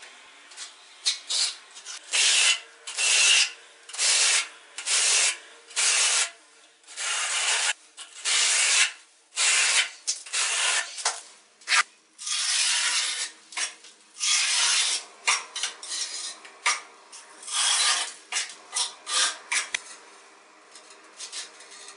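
Steel notched trowel scraping tile adhesive across a cement-rendered wall: a run of rasping strokes about one a second, with a few longer sweeps in the second half as the adhesive is combed into ridges.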